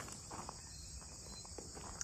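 Steady, high-pitched chorus of insects, with a few faint scuffs of footsteps under it.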